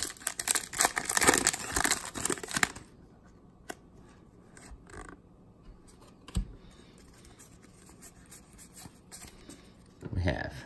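Foil Pokémon booster-pack wrapper crinkling and tearing open for about the first three seconds. After that come much quieter soft rustles and light taps of trading cards being handled, with one small knock a little past the middle.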